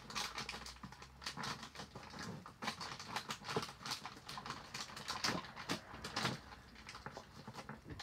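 A bag of gumballs being handled: irregular rustling and small clicks as gumballs stuck together are worked out of the bag.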